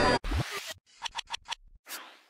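Logo transition sound effect: a short swish, then four quick scratchy clicks in a row, then a sharp swish near the end.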